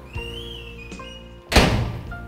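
A door being shut with one loud thunk about one and a half seconds in, over background music.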